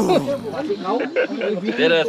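Speech only: men talking in a group.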